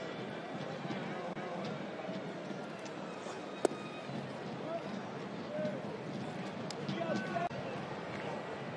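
Ballpark crowd murmur with scattered distant voices, broken once about three and a half seconds in by a sharp pop: the pitch landing in the catcher's mitt for a ball.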